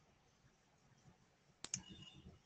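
Near silence, then two quick, faint clicks of a computer mouse close together near the end.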